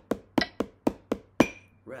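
Wooden drumsticks tapping a steady practice rhythm, about four sharp taps a second, played along with a metronome clicking once a second at 60 BPM. A voice starts counting the rests near the end.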